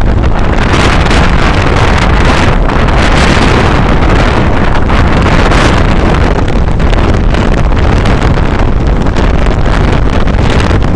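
Loud, steady wind buffeting on the microphone of a phone filming from a moving motorcycle, with the motorcycle's running noise mixed in.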